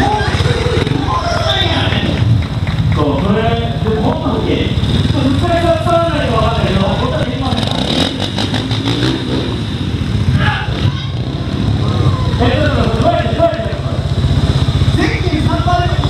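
Trials motorcycle engines running at low revs, a steady low rumble under an announcer's voice speaking continuously.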